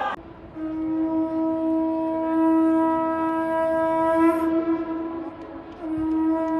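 A horn-like wind instrument blowing one long, steady note. The note breaks off briefly about five seconds in, then starts again at the same pitch.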